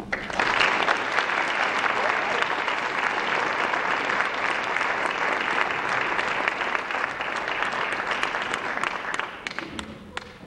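Audience applauding, a dense round of clapping that thins to a few scattered claps near the end.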